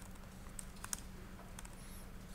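Faint typing on a computer keyboard: a handful of scattered keystrokes over a low, steady hum.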